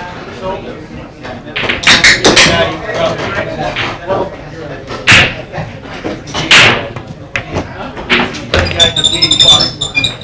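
Sharp clacks and knocks of pool balls and cues, several spread through, against room chatter.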